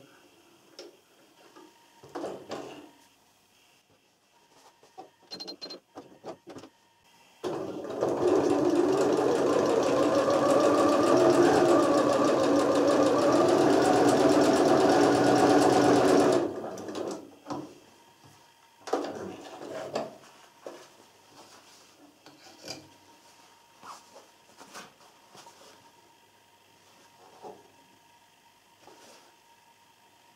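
Janome computerized sewing machine with a horizontal drop-in bobbin stitching a seam in one continuous run of about nine seconds, starting about seven seconds in and then stopping. This is a test run just after the lint was cleaned out of the bobbin area. Light handling clicks come before and after the run.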